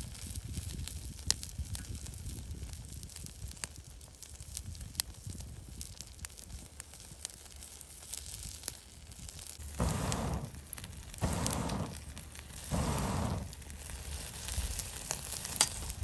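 Meat sizzling on a wire-mesh grill over a wood and charcoal fire, the fire crackling with frequent sharp pops. Three short, louder bursts of a deeper sound come in the second half.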